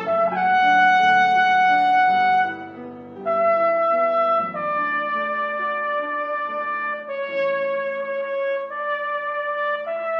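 A cornet plays a slow, lyrical melody of long held notes over a soft piano accompaniment. There is a brief breath break between phrases about two and a half seconds in.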